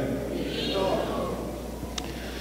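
A faint, short, high-pitched vocal sound with a wavering pitch about half a second in, heard over a steady low electrical hum.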